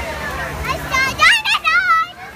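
A young child's high-pitched voice calling out excitedly in short wavering cries, starting just under a second in and loudest near the middle. Other children's voices are a steady babble behind it.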